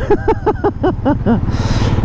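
A man laughing in a quick run of short bursts, then a brief hiss near the end, over the steady running of a Royal Enfield Classic 500's single-cylinder engine.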